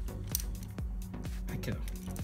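Socket ratchet clicking irregularly as a 10 mm battery-terminal nut is tightened by hand, over steady background music.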